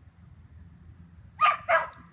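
A dog barks twice in quick succession about one and a half seconds in, over a faint low background rumble.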